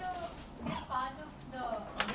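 Speech only: a person's voice asking a question off-microphone, the words hard to make out.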